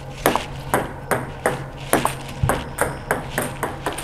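Table tennis ball clicking in quick succession off the table and the bat as forehand drop shots are played, about two or three light, sharp clicks a second.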